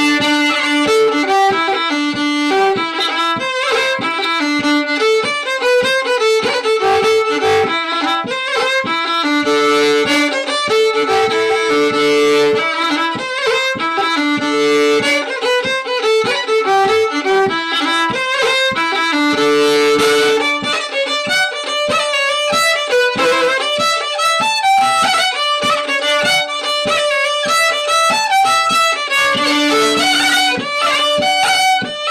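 Fiddle playing a traditional tune in a continuous stream of short bowed notes, taken a little faster than before as a practice run-through.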